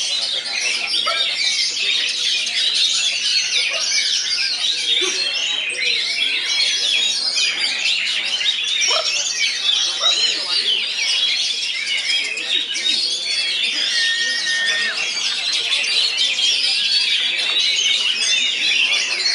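Caged songbirds, oriental magpie-robins (kacer) among them, singing at once in a dense, unbroken chorus of rapid whistles, trills and chirps, high-pitched and without pause.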